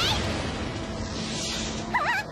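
Anime battle sound effects: a steady rushing blast noise as a dark energy wave sweeps the ground. A short rising voice cry trails off at the start, and a brief high, wavering shout comes at the very end.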